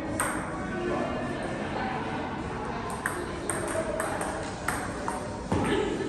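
Celluloid-style table tennis ball clicking off rubber paddles and the table in a rally, sharp ticks coming irregularly a fraction of a second to a second apart, with voices chattering in the background.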